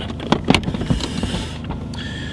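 Several sharp knocks and clicks in the first second, over a steady low hum inside a car.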